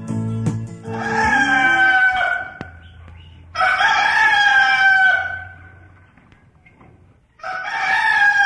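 A rooster crowing three times, each crow a long call of about one and a half to two seconds, the third running on past the end. Soft music fades out in the first second.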